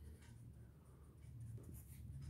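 Pen writing on paper on a clipboard, a few faint scratching strokes over a faint low hum.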